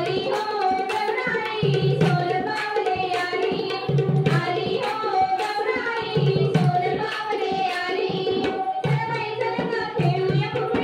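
A woman singing a Marathi fugdi folk song over a microphone, accompanied by a dholki hand drum playing a steady, driving beat.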